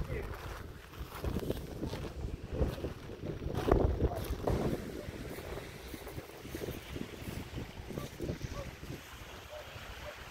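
Wind buffeting the microphone, with irregular crunching footsteps on shingle, loudest about four seconds in. The second half settles into steadier wind.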